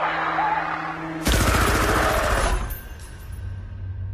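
Tense film score, then about a second in a sudden loud burst of rapid automatic gunfire with a deep boom, dying away after about a second and a half.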